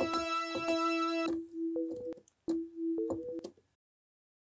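Software synthesizer preset in Arturia Analog Lab played from a keyboard controller: a held chord with repeated sharp note attacks, then two shorter notes. It stops abruptly a little before the end.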